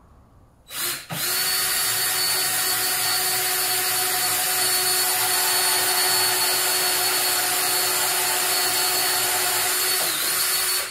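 DEWALT 20V MAX cordless drill boring a hole through a cabinet door for a handle pull. It gives a short burst about a second in, then runs steadily at one speed and pitch.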